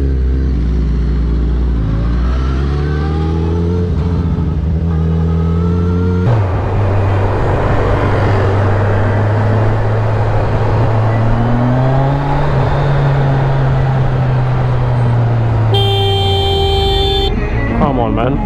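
Motorcycle engine on the move with its pitch rising as it accelerates. After a cut, another motorcycle rides in traffic with wind and road noise, its engine rising and falling slightly. Near the end a vehicle horn sounds for about a second and a half.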